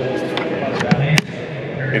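A few sharp clicks and knocks, the last one loudest, as a latched-up insulated thermo beehive is handled and lifted off a table, over a steady low hum.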